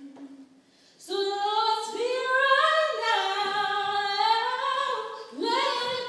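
A woman singing long held notes that step up and down in pitch, with no instruments standing out. The singing comes in about a second in after a short near-silent gap and breaks off briefly near the end.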